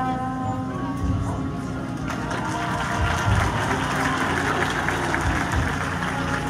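A marching band's brass holds its notes, and about two seconds in, audience applause rises over the still-sounding band.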